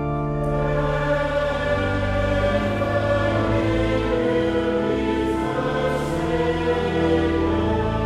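Church congregation singing a verse of a metrical psalm in Dutch, accompanied by an organ holding long steady chords.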